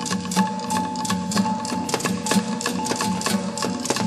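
Moro gong and percussion music: a fast, even beat of sharp metallic strikes, about five a second, over sustained ringing gong tones.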